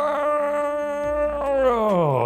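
A man's long, drawn-out thinking vocalisation: one held note that slides down in pitch near the end, the sound of someone pondering a tricky question before answering.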